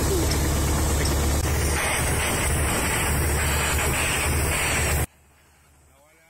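Caterpillar 345 excavator's diesel engine running steadily and loudly, close by, with a rushing noise over it. The sound cuts off abruptly about five seconds in, leaving only a faint low background.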